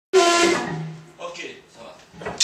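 A voice through a stage PA in a small hall: two drawn-out syllables, the second lower in pitch, loud at first and fading, followed by a few quieter sounds.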